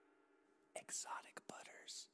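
Near silence, then about three-quarters of a second in, a brief breathy whisper with no music under it.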